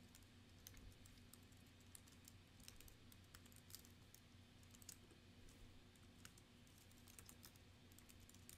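Faint computer keyboard typing: a run of quick, irregular key clicks over a low steady hum.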